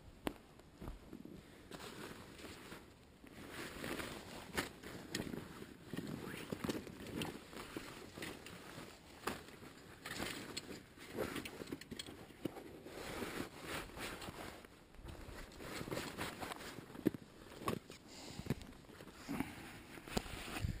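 Footsteps of a hiker walking a forest trail over dry conifer needles and twigs: an uneven run of soft crunches and scuffs.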